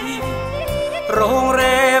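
A Thai luk thung song: a male singer's wavering voice over band accompaniment with steady bass notes. A new sung phrase glides in about a second in.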